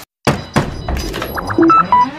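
Cartoon sound effects for a logo sting: a brief dropout, then a thud about a quarter second in, followed by a run of clicks and short high blips near the end, over electronic music.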